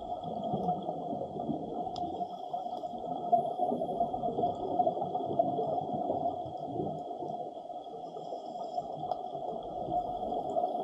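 Muffled underwater water noise heard through a camera's waterproof housing: a dense, steady rush with a faint high whine running under it.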